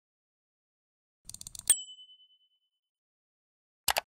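Intro-animation sound effects: a quick run of about six small clicks, then a bright ding that rings out for about a second. Near the end comes a sharp double click like a mouse click.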